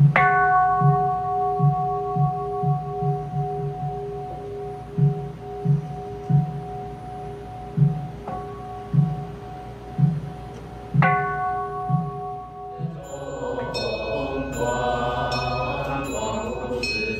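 A large Buddhist bowl bell (qing) is struck at the start and rings on for many seconds. It is struck softly again about eight seconds in and firmly about eleven seconds in. Throughout, a wooden fish is knocked in a slow beat that quickens for a moment and slows again, and near the end voices begin chanting with a small hand bell ringing.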